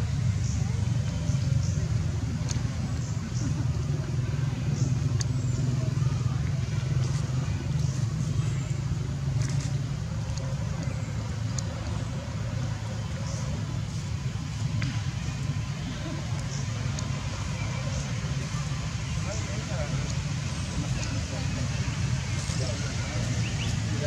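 Steady low rumble of outdoor background noise with faint distant voices and scattered small clicks.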